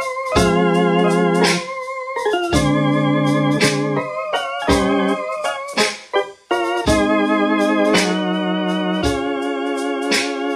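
Electronic keyboard playing sustained organ chords with a wavering vibrato, moving to a new chord roughly every second, with a short break about six seconds in.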